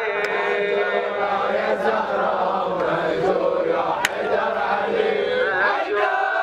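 A crowd of men chanting a Shia Muharram mourning lament (latmiya) together in unison. One sharp smack cuts through about four seconds in.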